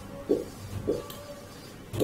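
Marker writing on a whiteboard: a few short strokes, with a thin squeak from the marker tip in the first half.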